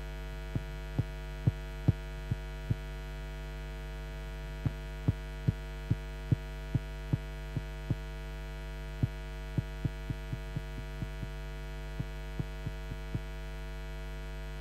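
Steady electrical mains hum from the venue's sound system, with short sharp clicks or knocks at uneven intervals, sometimes about two a second, pausing for a couple of seconds near the start.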